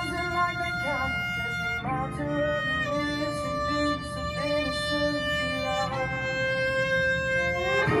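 Violin playing long held notes over the recorded pop song, moving to a new note about two seconds in and again about six seconds in, with an upward slide into a higher note at the very end.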